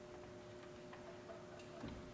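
A very quiet pause: a faint steady tone at two pitches with a few small clicks, the loudest just before the end.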